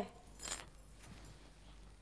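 A brief metallic jingle about half a second in, from a travel bag's fittings as the bag is picked up by its handle.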